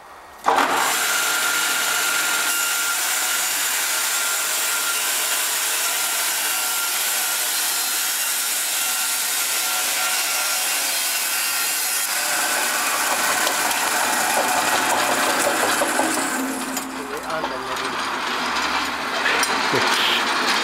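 Jonsered band sawmill sawing lengthwise through a squared timber beam to take off a board: a loud, steady sawing noise that starts suddenly about half a second in and shifts in tone about twelve seconds in.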